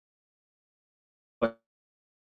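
Dead silence on a noise-gated microphone, broken once about one and a half seconds in by a single very short voiced syllable from a man.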